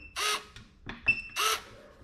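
Cuta-Copter Trident 5000 fishing drone's bait-drop mechanism actuating twice, each time a short high beep followed by a brief motor whir, as the remote's B button is pressed to release the bait.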